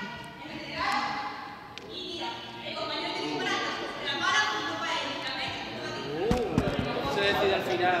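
Voices talking and calling out, echoing in a large sports hall, with a few thuds of a ball hitting the floor about six seconds in.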